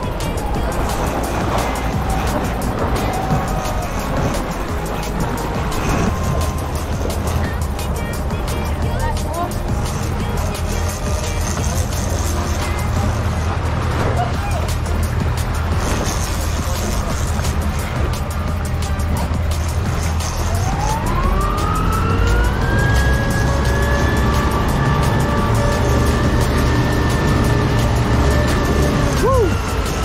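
Suzuki outboard motor running. About two-thirds of the way through, its whine rises as the throttle opens, holds steady at higher revs, then drops sharply near the end.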